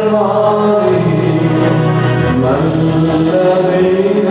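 A man sings a slow devotional chant into a microphone, his voice gliding between long held notes over a steady low drone.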